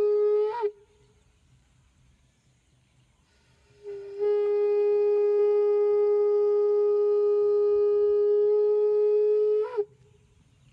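A blown horn sounding long, steady single-pitch blasts. One blast ends under a second in. After about three seconds of quiet, another is held for almost six seconds. Each ends with a brief upward lift in pitch.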